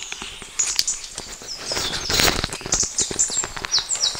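A clip-on lavalier microphone being handled and taken off, with rustling, rubbing and small knocks right on the mic, loudest about two seconds in. Small birds chirp repeatedly in short high notes throughout.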